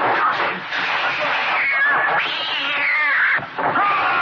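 Cat-like yowls from a kung fu fighter imitating a cat as he fights in cat's claw style: short gliding cries, then one long falling yowl about two seconds in. They sound over the steady noise of the fight's soundtrack.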